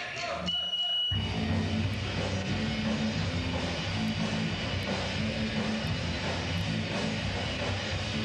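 Live rock band kicking into a song about a second in: electric guitar, bass and drums playing loud and steady. Just before it starts, a short high steady tone sounds.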